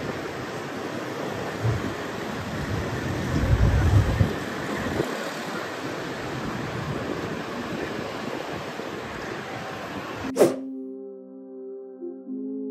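Steady outdoor wash of noise from the sea and the busy street below, with a low rumble about four seconds in. Near the end it cuts off abruptly with a click into soft ambient music of long held tones.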